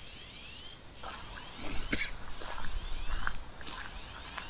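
A short, high, rising squeak repeated about once a second, with scattered clicks and knocks.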